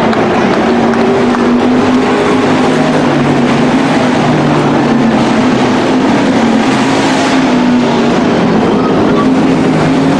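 Dirt-track hobby stock race cars running at speed on the oval, their engines droning steadily together as the field goes by.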